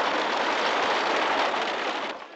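A steady, even rushing noise, like rain or a hiss.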